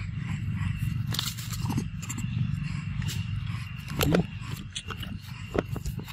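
Macaques feeding on mangoes: a short rising call about four seconds in, a fainter one earlier, and scattered small clicks of handling and biting the fruit, over a steady low rumble.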